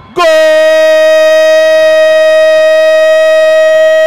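A football commentator's long held goal shout, "Gol", sung out as one steady, loud note of about four seconds.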